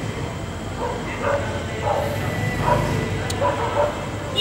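A dog barking repeatedly: about six short barks, roughly half a second to a second apart.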